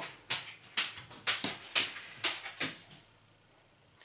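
Hands handling crocheted cotton yarn fabric and a yarn tail close to the microphone: about eight short, scratchy rustles, stopping about three seconds in.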